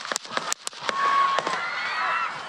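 Rifle gunshots: a rapid series of sharp cracks, several within about a second and a half, with people in the crowd screaming around and after them.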